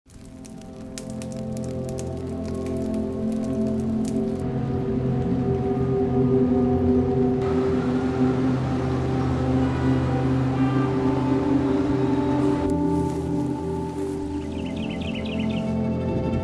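Background music: slow, sustained ambient chords that fade in from silence over the first few seconds and then hold steady.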